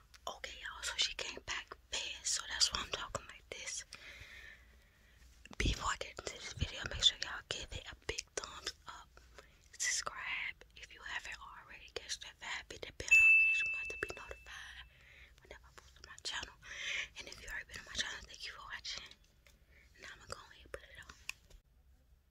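A woman whispering close to the microphone, in short runs of words with pauses. About two-thirds of the way through, a brief high beep sounds and fades.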